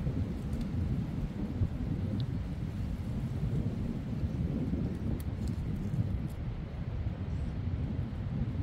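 Wind buffeting the microphone outdoors: a steady, rough low rumble, with a few faint small clicks over it.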